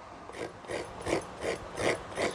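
Fresh coconut being grated by hand on a grater: short scraping strokes, about three a second, starting about half a second in.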